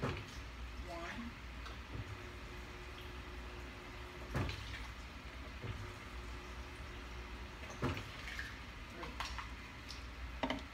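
Quiet kitchen handling sounds: a few faint knocks and clatters as a bowl and kitchenware are moved about, the clearest about halfway through and another near the end.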